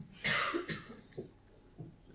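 A person coughing once, sharply, about a quarter second in, followed by a few faint low sounds in a small room.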